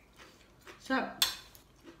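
Metal spoon and fork clinking and scraping against a ceramic plate as food is scooped up, with one sharp clink just over a second in.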